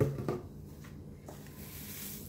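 Quiet handling of a clear plastic jar and a plastic bowl of dried shiso leaves on a stone countertop: a brief rustle at the start and a soft tap a little past halfway.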